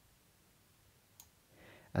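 Near silence with a single faint computer-mouse click about a second in.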